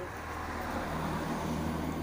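A road vehicle's engine running close by on the street, a steady low hum that grows slightly louder.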